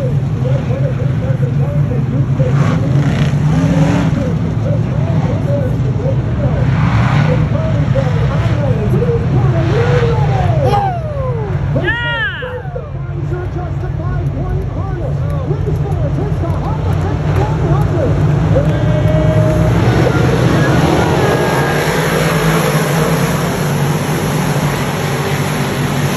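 Dirt modified race cars' V8 engines running at speed around the track, their pitch rising and falling as cars pass, under a steady low drone from the field. About twelve seconds in, one car passes close with a loud sweep up and down in pitch.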